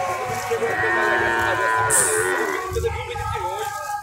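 A cow mooing: one long call of about two seconds, with shorter voice-like sounds after it.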